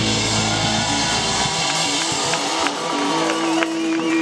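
A live band playing with drums, bass and guitar. The low drum and bass end cuts out about a second and a half in, leaving held guitar notes ringing on.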